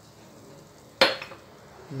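Kitchenware set down on a granite worktop: one sharp knock about a second in.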